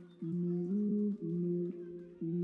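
Live electronic Afro-dub band music: a low riff of held notes, each about half a second long, starting and stopping sharply with short gaps between phrases.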